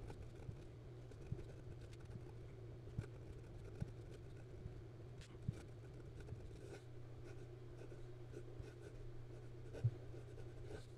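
A fountain pen's #6 Jowo steel nib, medium grind, writing on Clairefontaine 90 gsm paper: faint scratching of the nib across the paper, with a few small ticks as the nib lifts and touches down.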